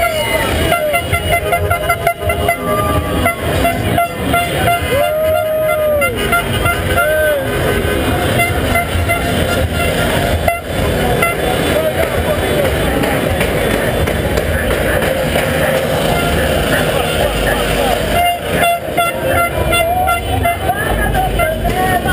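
Car horns honking in a slow street motorcade, a long blast about five seconds in and a shorter one soon after, over a continuous din of voices and running vehicles.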